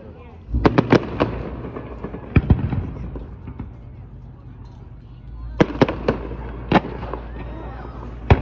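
Aerial fireworks shells bursting in quick clusters: about four sharp bangs half a second in, two more around two and a half seconds, and another group near six seconds, with a low rumble between them.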